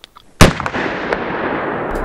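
A single, very loud shot from a big-bore magnum handgun about half a second in. It is followed by a loud, sustained wash of sound that does not die away.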